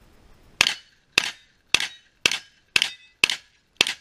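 Seven gunshots from a long gun fired in quick, steady succession, about two shots a second, each one trailing off briefly.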